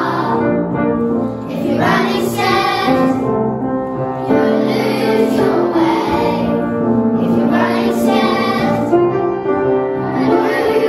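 A choir of primary-school children singing together in sustained phrases.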